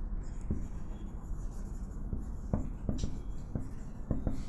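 Whiteboard marker writing on a whiteboard: quiet, scratchy strokes of the felt tip, with a few light ticks as the pen touches down, mostly in the second half.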